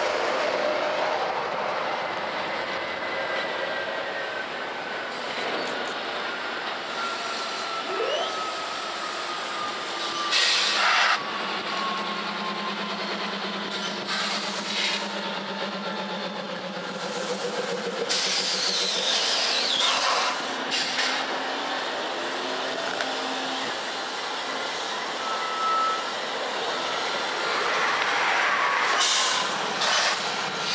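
Norfolk Southern diesel locomotives passing close by at the head of a freight train: engines running with a low hum and wheels rolling on the rails. A thin squealing tone slides slowly down in pitch, and a few short loud bursts of noise break through.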